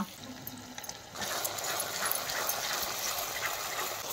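Onion-tomato masala sizzling in oil in a kadai, a steady crackling hiss that starts about a second in.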